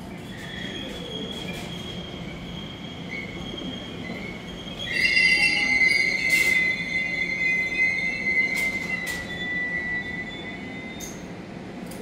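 Class 345 Elizabeth line electric train running into a platform: rumble with a steady high whine. About five seconds in, a loud high-pitched squeal starts as it brakes and fades near the end, with a few sharp clicks.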